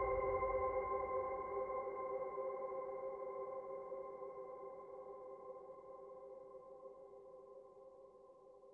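A held synthesizer chord at the close of a jingle, fading out steadily over several seconds, with a low rumble dying away in the first second.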